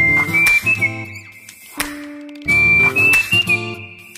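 Background music: a high, whistle-like melody moving in short steps over a chordal accompaniment, the phrase starting again a little over two seconds in.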